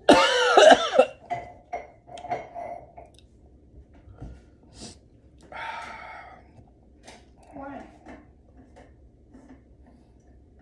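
A man coughing hard into his fist, a loud fit in the first second, then a couple of quieter coughs later; a reaction to the burn of the extremely hot reaper pepper chip he has eaten.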